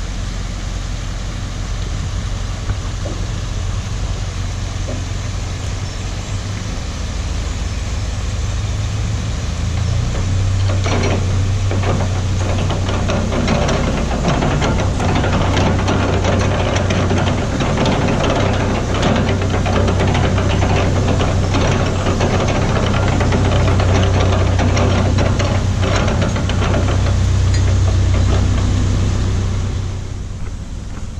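Narrowboat diesel engine running at low speed with a steady low throb as the boat comes into a lock, growing louder from about ten seconds in as it nears.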